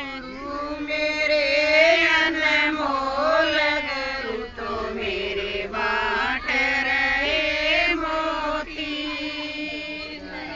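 Women singing a Haryanvi devotional song to the guru in long, held, wavering lines.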